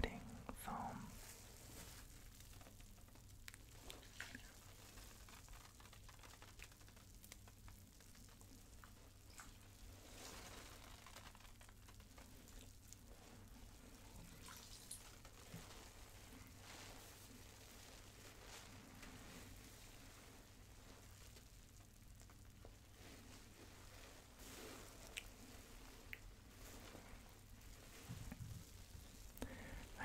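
Faint crackle of bath foam bubbles popping, with scattered small ticks and drips of water, over a low steady hum.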